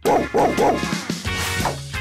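A dog barking over music: three quick barks in the first second and one more near the end.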